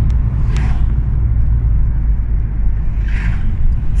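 Steady low rumble of road and engine noise heard inside a moving car, with two brief rushing sounds, one about half a second in and one about three seconds in.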